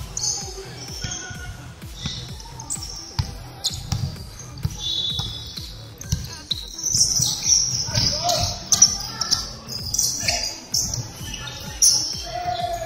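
Basketball bouncing on a wooden gym floor during play, with repeated sharp bounces and short high-pitched sneaker squeaks. Players' voices call out now and then.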